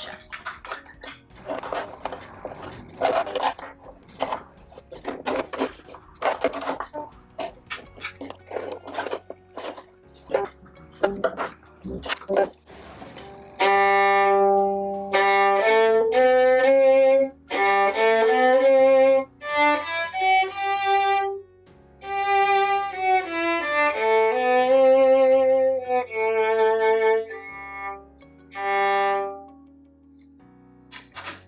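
Acoustic violin, its sound post just repositioned, being bowed to test the tone: a phrase of sustained, singing notes that starts a little under halfway in. To her ear the G string now sounds full but no longer too loud or muddy. Before it come irregular small clicks and taps of the instrument being handled.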